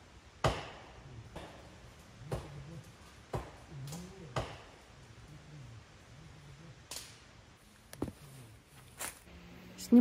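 Sharp knocks, about one a second for the first few seconds, then three more spaced out towards the end.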